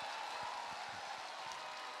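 Faint, steady applause from a large audience, an even wash of many hands clapping.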